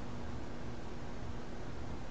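Steady background hiss of room noise with a faint low hum, with no distinct sound event.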